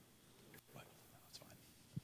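Near silence with faint whispering voices, and a short low thump near the end.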